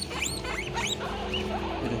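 Guinea pigs squeaking: a run of four or five quick, high squeals, each sliding upward in pitch, in the first second, followed by softer wavering chirps.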